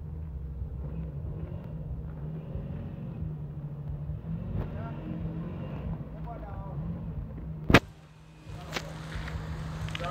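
Engine of a Kantanka limousine tricycle running with a steady low drone as it moves slowly. A single loud sharp knock comes near the end, after which the drone drops away for a moment before returning.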